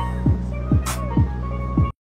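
Steel pan music over a backing track with a steady thudding beat about twice a second, cutting off suddenly near the end.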